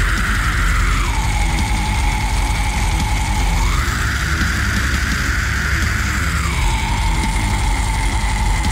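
Loud heavy metal instrumental with dense distorted guitars and drums. A sustained high line drops in pitch about a second in, rises back near four seconds and drops again near six and a half.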